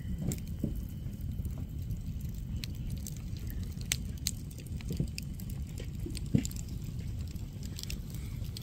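Campfire crackling, with scattered sharp pops over a steady low rumble.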